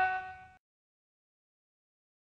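Electric guitar's final held note fading out over about half a second and then cutting off into silence.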